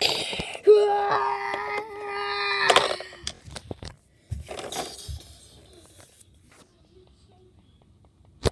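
A voice giving one long held "aaah" wail, steady in pitch for about two seconds, voicing a toy character's cry. Then a brief rustle of handling, and near quiet for the last few seconds.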